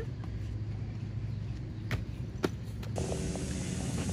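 Low steady outdoor rumble with two brief knocks around the middle; near the end the background changes to a brighter hiss.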